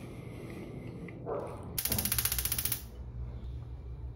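Rapid run of clicks lasting about a second, near the middle: a gas stove's electric igniter sparking to light a burner.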